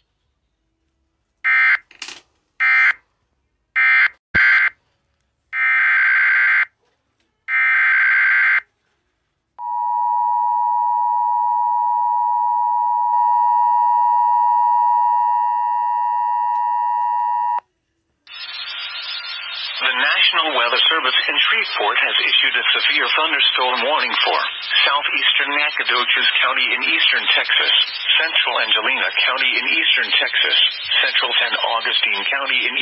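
Emergency Alert System broadcast over a weather radio stream: a run of short screeching SAME data bursts of the alert header, then the steady two-tone attention signal for about eight seconds, and from about eighteen seconds in a voice begins reading the alert.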